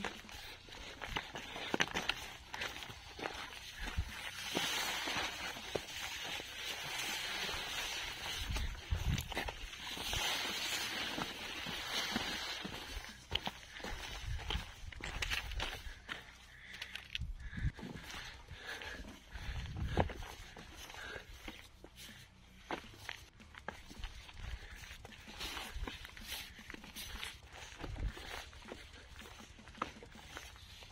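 Hikers' footsteps on a stony mountain path: irregular scuffs and knocks of boots on loose rock, with a stretch of rustling in the first half.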